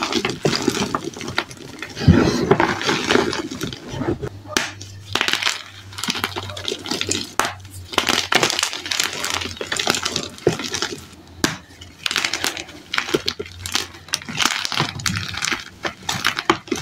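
Blocks of gym chalk being squeezed and crumbled in the hands over a tub of loose chalk powder: a dense, continuous run of crisp crunches and crumbling crackles.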